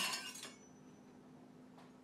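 A faint clink with a short high ring, over quiet room tone with a low steady hum.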